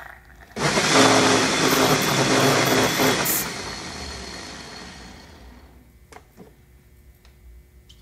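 Small single-serve blender motor running, blending soaked beans and water into batter: it starts about half a second in, runs steadily for about two and a half seconds, then winds down over the next two seconds. A few light clicks follow near the end.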